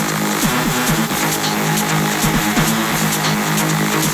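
Techno in a breakdown: the kick drum has dropped out, leaving held synth notes with repeated falling pitch swoops over ticking high percussion.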